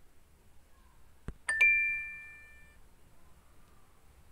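An online quiz's correct-answer chime: a short click, then a bright two-tone ding about a second and a half in that rings on and fades over about a second, marking the chosen answer as right.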